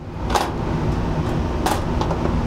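Biosafety cabinet blower running with a steady hum, broken by two sharp clicks: one about half a second in, one near the end.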